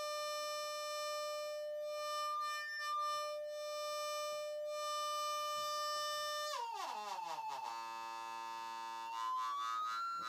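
Hard-synced triangle wave from a Doepfer VCO on a modular synthesizer: a steady pitched tone, which about six and a half seconds in slides down to a lower, buzzier note. Near the end a whistling overtone sweeps up.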